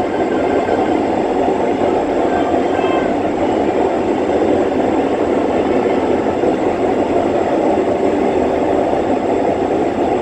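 Electric commuter train running through a tunnel, heard from inside the train: a steady rumble of wheels on rail that echoes off the tunnel walls. There is a faint, brief high squeal about two to three seconds in.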